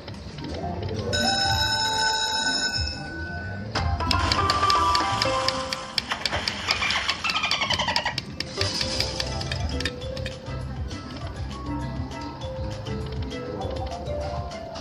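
Poker machine electronic game sounds: a held chime chord about a second in, then a fast run of ticking notes with a falling tune from about four to eight seconds, and short jingles as the free games feature begins near the end.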